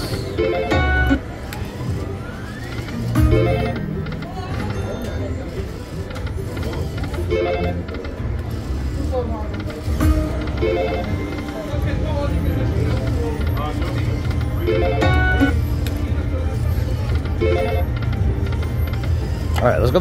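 Video slot machine spinning, with short electronic chime tones every few seconds as the reels land. A steady low hum of the casino floor runs underneath.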